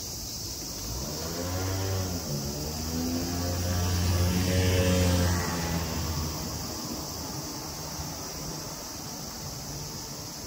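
A motor vehicle's engine passes by out of sight. Its low hum grows louder from about a second in, peaks around the middle, then fades away.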